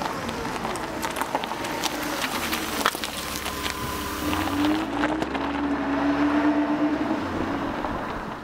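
A vehicle engine running steadily, with scattered light clicks and a slight rise in pitch about halfway through.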